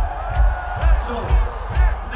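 A steady low beat on the stadium sound system, about two thumps a second, with a crowd cheering and whooping over it.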